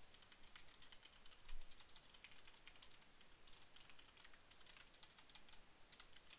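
Faint computer keyboard typing: a quick, irregular run of keystroke clicks.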